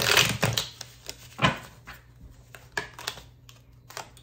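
Tarot cards being handled from a deck: a short rustling flurry at the start, then a few scattered sharp card snaps and taps as cards are pulled and set down.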